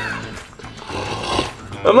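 A person breathing in with a snore-like rasp through a cardboard tube, making a lion-like roar.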